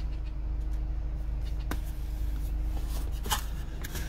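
Steady low rumble of a car cabin, with a few light clicks and rubs of plastic-lidded foam juice cups and a straw being handled in the console cup holders, about two seconds in and again near the end.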